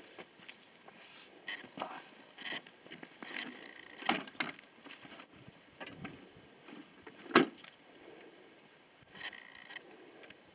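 Absima Sherpa RC rock crawler clambering over loose stones and gravel: scattered clicks and knocks of rock under its tyres and chassis, the loudest sharp knock about seven seconds in.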